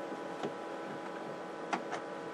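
Steady electrical hum from powered-up bench electronics, with a few faint clicks.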